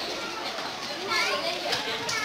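Voices of people talking in the background, with high-pitched, child-like voices about a second in.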